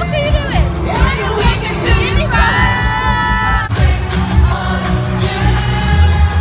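Live pop concert in an arena: loud amplified band with heavy bass, and fans close by singing along and screaming. A long high held note cuts off suddenly about three and a half seconds in.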